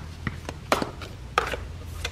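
A deck of tarot cards being handled over a wooden table: about five sharp snaps and taps of the cards, the loudest two near the middle, over a low steady hum.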